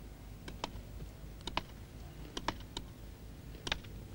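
Hammers striking rock: sharp, irregular clicks, often in close pairs, roughly one or two a second.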